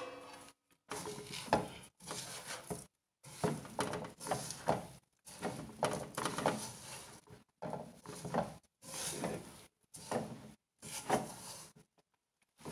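Silicone spatula stirring and scraping a dry, grainy flour-and-nut mixture around a metal frying pan, in about nine rough strokes roughly a second apart.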